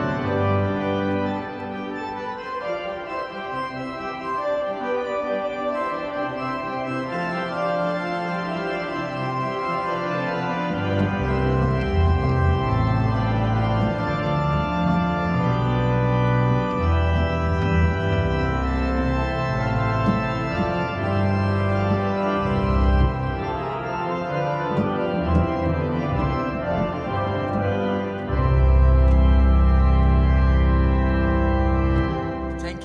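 Organ improvisation on manuals and pedal board: sustained chords on the manuals, with pedal bass notes entering about a third of the way in and moving beneath them. Near the end it swells into a loud, full chord with a deep held bass.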